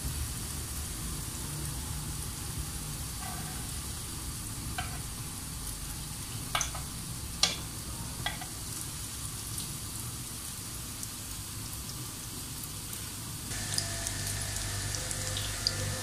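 Potato-and-chicken cutlets shallow-frying in hot oil in a flat pan, a steady sizzle, with a few sharp clicks of steel tongs against the pan and cutlets in the middle stretch.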